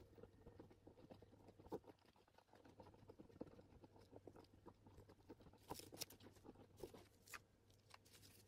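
Faint small clicks and scrapes of a wooden stick stirring epoxy resin in a silicone mixing cup, with a few sharper ticks in the second half over a low hum.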